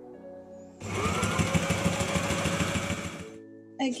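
Sailrite sewing machine running at speed, stitching a fabric strip: a burst of rapid needle clatter starts about a second in, with the motor's whine rising as it comes up to speed, and stops sharply near the end.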